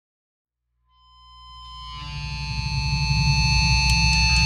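Electric guitar amplifier feedback. Several steady ringing tones over a low distorted drone fade in from silence about a second in and swell louder, ahead of the band's first song.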